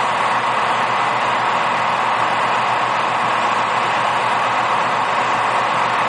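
Steady, even hiss of radio scanner static on a railroad channel, the same noise the radio voices before and after sit on.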